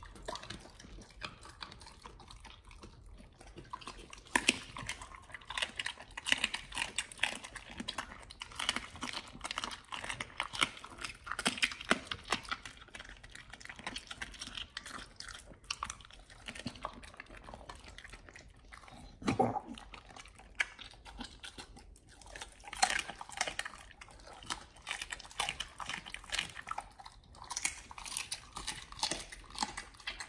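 A pit bull chewing a raw duck wing fed by hand, its teeth crunching through the bone and skin in quick, irregular crunches and wet clicks. There is a short, louder, lower sound about two-thirds of the way through.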